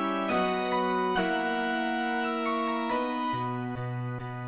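Organ and piano accompaniment playing the instrumental introduction to the opening chorus. The sustained chords change every second or two, and a low bass note comes in near the end.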